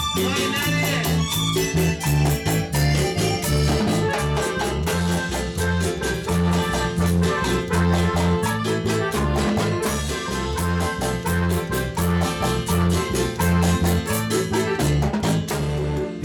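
Live Ecuadorian tonada played on an electronic keyboard over a repeating bass line and a steady, fast percussion beat.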